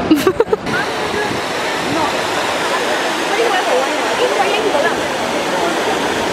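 Trevi Fountain's water cascading over its rockwork into the basin, a steady rushing, with crowd chatter mixed in. A few brief thumps come right at the start.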